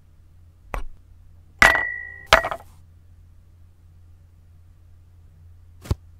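Toy gold bars clinking against a glass bowl: a light tap, then two sharp clinks, the first leaving the glass ringing briefly with a clear high tone. Another short tap comes just before the end.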